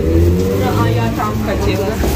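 Indistinct talking over a steady low rumble.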